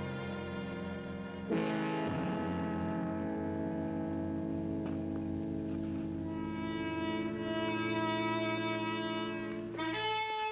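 Orchestral background score of held chords on brass and strings. A louder chord comes in about a second and a half in, and the music swells fuller in the second half.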